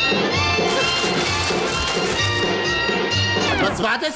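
Upbeat instrumental band music with a steady beat, ending in a downward slide in pitch just before it stops.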